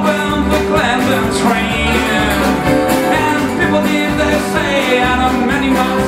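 Live Americana band playing an instrumental passage: strummed acoustic guitars, accordion, fiddle and upright bass over a steady beat, with a wavering lead melody on top.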